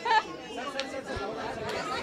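Overlapping chatter of many voices in a large room, with a few short sharp clicks.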